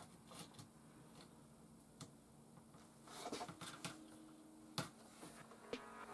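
Faint clicks and taps of a turned aluminium bench dog being lifted from its hole in a wooden workbench top and handled, with a sharper click about five seconds in.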